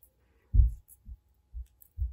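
A few soft, dull low thuds, the first and loudest about half a second in and weaker ones about every half second after, as fingers handle a small beaded apple and twist its fine wire ends together.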